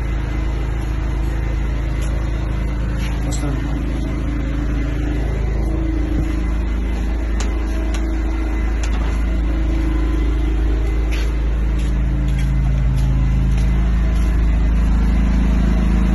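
A 7 kW Bajaj portable petrol generator set running steadily, giving a continuous low engine hum that gets slightly louder in the last few seconds.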